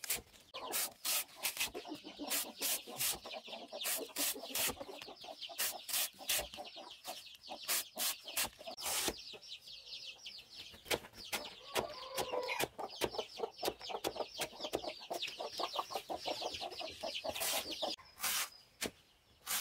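Machete slicing a peeled bamboo shoot into rounds against a wooden block, with quick, uneven chops every half second or so. A hen clucks steadily behind the chopping from about a second in until near the end.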